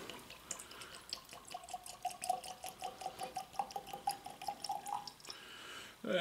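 Whiskey poured from a bottle into a tulip-shaped tasting glass: a fast run of small glugs with a faint tone that rises slightly as the glass fills, stopping about five seconds in.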